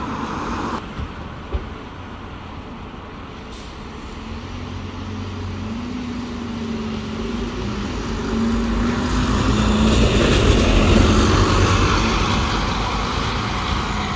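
Volvo B9TL double-decker bus's six-cylinder diesel engine running with a steady tone as the bus approaches, growing louder as it passes close by about ten seconds in with tyre hiss on the wet road, then easing off as it pulls away.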